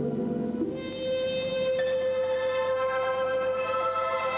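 Music accompanying a rhythmic gymnastics ball routine: long held notes, with a new sustained chord coming in just under a second in after a brief dip.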